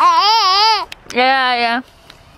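A toddler's excited vocalising: two long drawn-out squeals, the first wavering up and down in pitch, the second lower and held steady.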